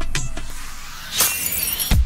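TV channel ident sting: the music's beat drops out, a rising whoosh builds into a bright sparkling burst a little past halfway, and a deep low hit lands near the end.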